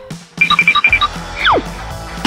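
A quick run of short, high electronic beeps, then a whistle sliding steeply down in pitch about a second and a half in: comedy sound effects over music.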